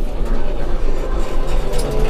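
Tümosan 6065 tractor's diesel engine running as a steady low rumble, heard from inside the cab, with the tractor just shifted into second gear.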